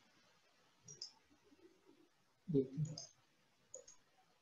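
Faint, short computer clicks, about three of them: one about a second in, one near three seconds and one near the end, as the OpenCV display windows are closed.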